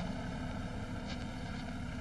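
Steady low rumble and hiss of an old film soundtrack's background, with no other event standing out.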